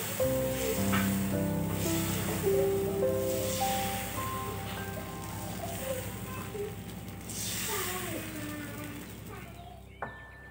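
Soft instrumental background music of slow, held notes that step from one pitch to the next, growing quieter toward the end.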